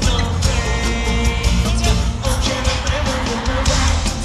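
Pop song performed live over a concert sound system: a heavy bass beat with group singing over it.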